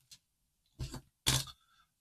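A man's voice making two short non-word sounds, about a second in and close together, like a hesitation or a clearing of the throat.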